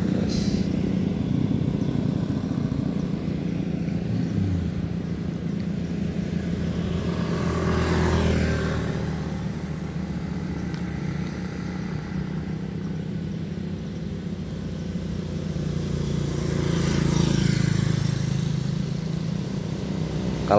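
Small underbone (bebek) motorcycles running past on a road: engines swell as a bike passes about eight seconds in, then grow louder again near the end as more bikes approach.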